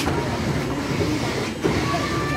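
A small rollercoaster train rumbling and clattering along its track, its wheels running steadily on the rails, with a single knock near the end.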